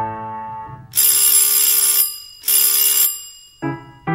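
Silent-film piano accompaniment lets a chord fade, then an electric bell rings twice, each ring about a second long. The piano comes back in just before the end.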